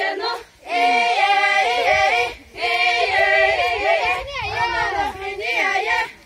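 A group of female voices singing a folk dance song together, unaccompanied, in long sung phrases with a short break for breath a little over two seconds in.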